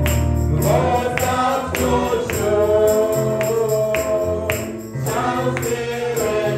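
Gospel music: voices singing long held notes over a steady percussion beat of about two strokes a second.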